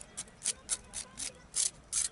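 A small stick scraping the charred skin off a fire-roasted rohu fish in short, quick strokes, about three a second.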